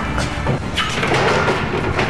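Heavy locked wooden church doors yanked by the handle, thudding and rattling in their frame without opening.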